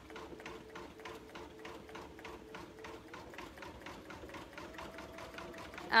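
Embroidery machine stitching: a fast, even run of needle strokes over a steady motor hum.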